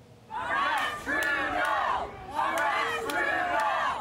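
A crowd of angry protesters shouting and yelling, many voices at once, with a brief lull about halfway through.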